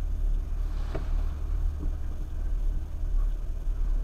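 Jeep engine idling, heard from inside the cab as a steady low rumble, with one short, faint knock about a second in.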